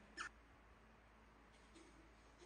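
One brief high-pitched squeak falling sharply in pitch, from a baby macaque, against near silence.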